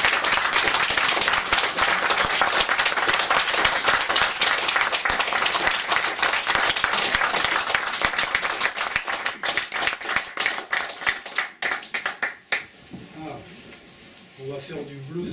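Small audience applauding, the clapping thinning to scattered claps and dying out about twelve seconds in.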